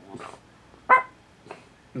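A dog whimpering in its sleep while dreaming, with one short, high yip about a second in as the loudest sound and softer breathy noises before and after it.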